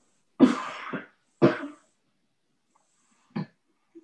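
A person coughing twice, about a second apart, followed by a short, fainter sound near the end.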